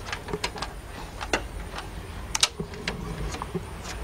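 Scattered sharp clicks and taps as multimeter test leads and back-probe pins are handled and fitted at a purge valve's wiring connector, over a low steady rumble.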